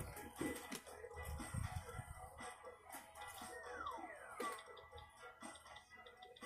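Faint background music from a television's speaker, with two falling whistle tones a little past halfway through.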